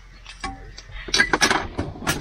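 Kitchenware clinking and clattering: a quick run of sharp clinks and knocks starting about a second in.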